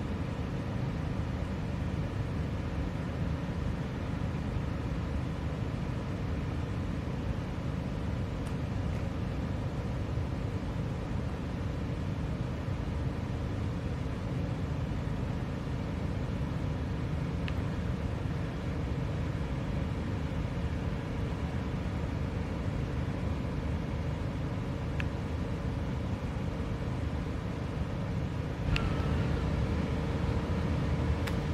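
Steady low outdoor background rumble with a faint even hum, and a few faint ticks; it grows slightly louder near the end. No bird calls are heard.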